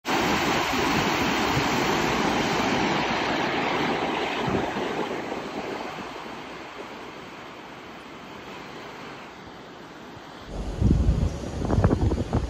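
Rushing, churning water of a cruise ship's wake, loud at first and fading away over several seconds. About ten seconds in it cuts to gusts of wind buffeting the microphone.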